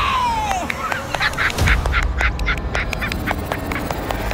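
Comic sound effects: a whistle-like tone sliding down in pitch, then a rapid run of duck-like quacks, about four a second, with a few sharp clicks near the end.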